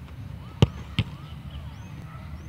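A football struck hard in a penalty kick, one sharp thud, followed about a third of a second later by a second, slightly softer impact as the ball meets the goal end.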